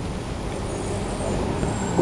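Steady low background rumble, with faint thin high tones coming in about half a second in.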